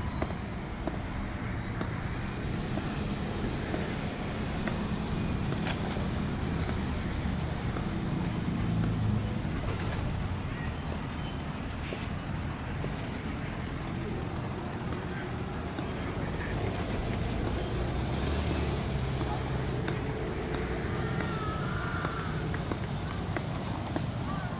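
Open-air field ambience: a steady low rumble of wind and distant traffic with faint, indistinct voices of players, and a few light clicks.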